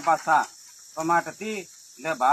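A man's voice reading aloud in short phrases with brief pauses, over a steady high-pitched drone of insects.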